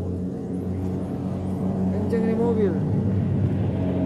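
A vehicle engine idling steadily, getting louder in the second half, with a person's voice briefly calling out about halfway through.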